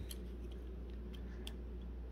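A few faint, light clicks scattered over a low steady room hum.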